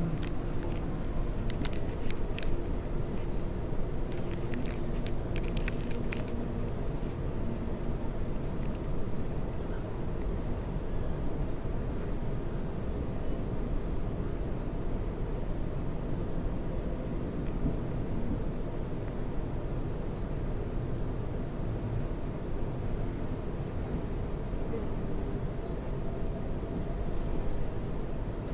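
Electric suburban train running between stations, heard inside the carriage: a steady rumble of wheels on track with a motor hum, and a few sharp clicks in the first several seconds.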